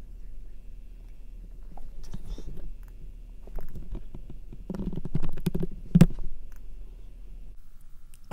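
Irregular clicks and knocks of a computer keyboard and mouse in use, busiest in the second half, with one louder knock about six seconds in, over a low steady hum.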